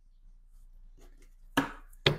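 A deck of tarot cards knocked sharply once against the tabletop about one and a half seconds in, after faint handling of the cards.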